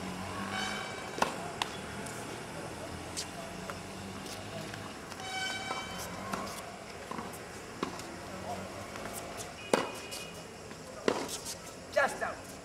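Tennis ball struck by rackets and bouncing on a hard court: a scattered series of sharp pops through a rally, the loudest two coming close together near the end. Players' voices call out briefly in between.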